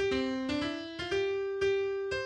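Computer playback of an AI-generated fiddle tune in C major: a plain melody of single synthesized notes, a few per second, each struck and then fading.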